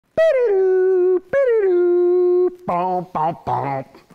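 A voice giving two long calls, each starting high, dropping and then held for about a second, followed near the end by three shorter, lower vocal sounds.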